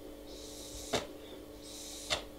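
Air hissing through an Innokin Jem tank's open airflow holes in two short draws, each ending in a sharp click. With the airflow control open wide, the draw is quite airy for a mouth-to-lung tank.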